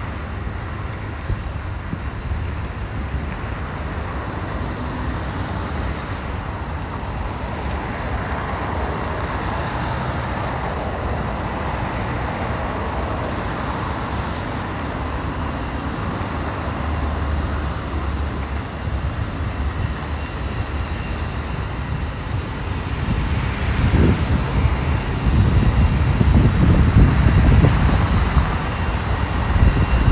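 City street ambience: steady road traffic noise from passing cars. A low rumble grows louder and gustier in the last several seconds.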